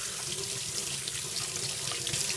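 Tap water running over soapy hands and splashing into a stainless steel sink as the lather is rinsed off, a steady rush of water.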